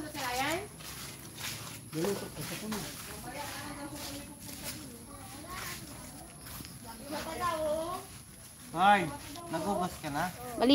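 People talking quietly, with a louder stretch of a voice near the end. A faint steady high-pitched whine runs underneath.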